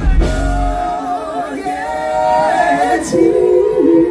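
Live soul performance heard through a concert sound system: a woman singing long held notes into a microphone, with voices in harmony. The band's deep bass stops about a second in, leaving mostly voices.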